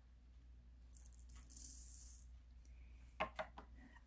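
Faint rattle of small plastic diamond-painting drills being shaken, lasting about a second and a half, followed by a few quick clicks about three seconds in.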